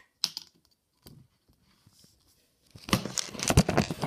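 Handling noise from working on sealed lead-acid batteries and their linking cord: a few light clicks, then from near three seconds in a dense run of clicking, scraping and crackling.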